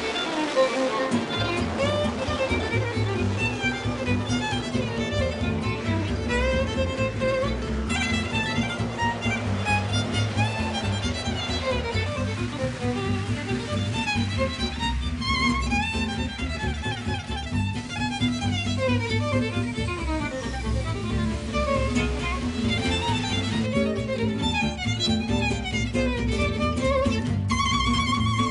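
Instrumental music led by a fiddle playing quick, wavering melodic runs over a steady low accompaniment.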